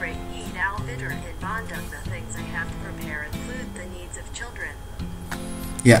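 Google Translate's synthesized English voice reading the translated sentence aloud, over background music with held low notes.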